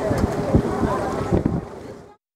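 A moored boat's engine running with a steady hum, with wind buffeting the microphone and people talking in the background. It all fades out near the end.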